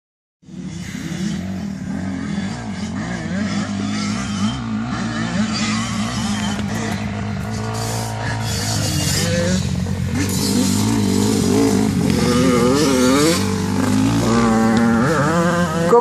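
ATV engine running close by: it holds a steady idle at first, then is revved again and again through the second half, its pitch rising and falling, loudest near the end.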